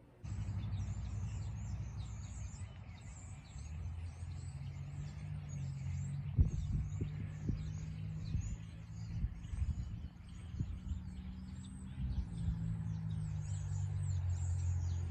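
Small birds chirping in many short, high calls throughout, over a low steady hum, with a few soft knocks about halfway through.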